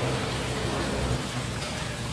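Steady hiss of background noise with a faint low hum underneath, with no distinct events.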